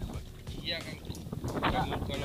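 Seawater sloshing and wind rumbling on the microphone as a gill net is handled by hand in choppy water, with two short bits of voice.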